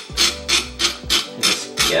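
Hand fish scaler scraping scales off a rainbow trout's skin in repeated quick strokes, about three a second, with background music underneath.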